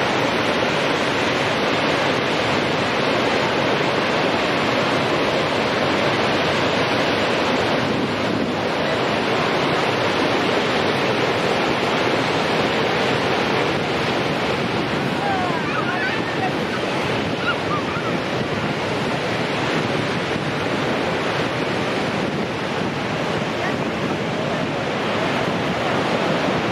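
Niagara Falls' Horseshoe Falls: a steady, unbroken rush of water plunging into the gorge.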